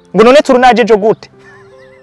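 A horse whinnying, one loud call about a second long that wavers up and down in pitch, over soft background music.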